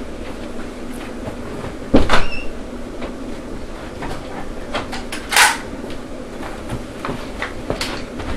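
Steady room noise with a sharp knock about two seconds in that rings briefly, and a short scraping hiss a little after five seconds, from someone moving about and handling things off camera.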